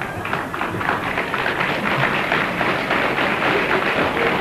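Live audience applauding and laughing, a steady stretch of clapping.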